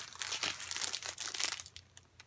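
Clear plastic wrapping on a pack of colouring file folders crinkling as it is handled: a dense run of small crackles that dies down near the end.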